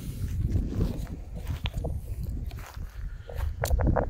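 Footsteps through dry grass over a low rumble, with a few short clicks and crunches near the end.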